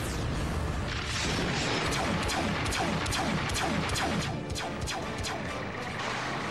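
Cartoon battle sound effects over action music: a rapid run of sharp blasts and explosions, with many short falling-pitch zaps, from about a second in.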